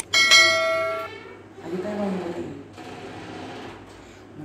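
A single bright bell-like ding that strikes sharply and rings out, fading over about a second.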